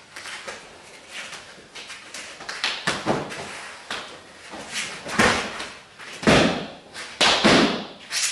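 Thuds and scuffs of a silat partner drill: elbow and knee strikes landing on the body, bare feet moving on a mat, and a takedown finished with a stomp. About half a dozen sharp hits, the loudest about five and six seconds in, some trailed by a short rush of noise.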